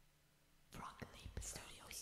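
A faint whisper of a person's voice, starting about two-thirds of a second in and lasting a little over a second.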